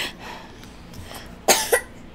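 A toddler coughing: a short, sharp double cough about one and a half seconds in.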